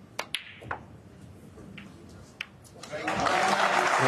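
Sharp clicks of snooker balls, the cue tip striking the cue ball and ball striking ball, followed about three seconds in by an audience breaking into applause for the shot, which becomes the loudest sound.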